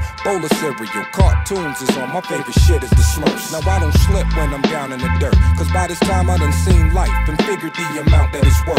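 Hip hop track: a rapped vocal over a beat with a deep, held bass line and sustained tones.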